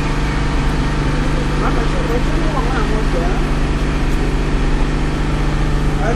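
Generator engine running at a steady speed, an even, unbroken hum.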